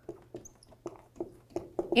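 Dry-erase marker writing on a whiteboard: a string of short, irregular squeaks and taps as the letters are stroked out.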